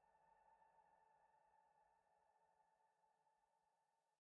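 Near silence, with a faint steady high tone that slowly fades.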